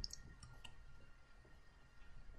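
Near silence: room tone with two faint clicks, one just after the start and one about two-thirds of a second in.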